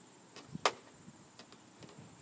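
Footsteps on wooden deck boards: a few short knocks, the loudest about two-thirds of a second in.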